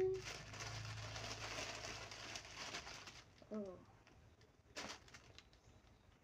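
Soft rustling of a T-shirt and its plastic bag being handled, fading after about three seconds. A short pitched sound falling in pitch comes about halfway through, and a light click follows.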